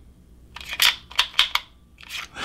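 Several short, sharp clicks of a magazine knocking and scraping against the magazine well of a stripped Sig P365 XL frame as it is pushed in without seating: with the slide off, the magazine will not go in.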